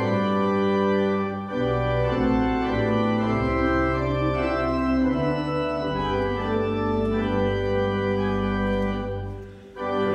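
Church organ playing a hymn introduction in sustained chords over a moving bass line. It breaks off briefly just before the end, ahead of the singing.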